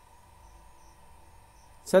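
A pause in a man's narration that holds only faint background: a low hum with a thin steady high whine. The voice comes back in right at the end.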